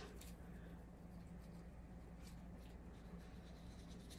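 Near silence: a few faint, scattered light ticks of coarse dead sea salt grains sprinkled by hand onto the soft top of a freshly poured soap loaf, over a low steady hum.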